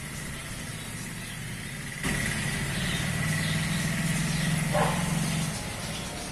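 An engine running steadily: a low hum comes in about two seconds in and stops shortly before the end.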